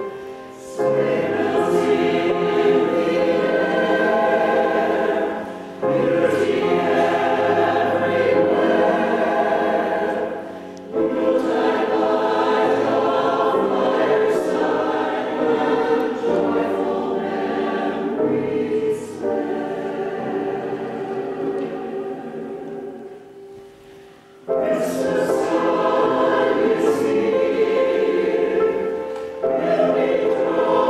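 Mixed-voice community choir of men and women singing in harmony with piano accompaniment. The singing comes in phrases of a few seconds with brief breaks between them, fades down for a moment about three-quarters of the way through, then comes back in full.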